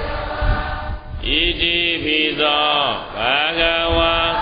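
Buddhist devotional chanting: a fuller blend of voices in the first second, then from about a second in a chanting voice holding long notes that slide up and down in pitch.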